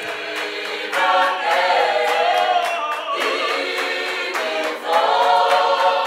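A group of men and women singing together in harmony, unaccompanied, with long held notes, growing louder about a second in.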